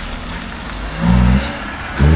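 A car engine revving in short bursts as the car turns: a loud rev about a second in, then another rising rev near the end.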